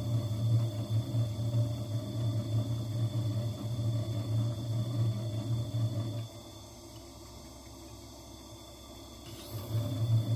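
A gemstone in a faceting quill grinding against a spinning faceting lap: a rough, low, wavering buzz. It stops about six seconds in, leaving only the machine's faint steady motor whine, and starts again near the end.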